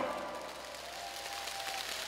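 The end of a song's amplified music dies away in the hall, leaving light audience applause and crowd noise.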